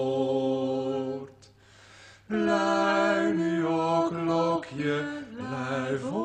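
A low voice singing slow, long held notes without clear words, unaccompanied, with a pause of about a second early on before it resumes on several held notes that step up and down in pitch.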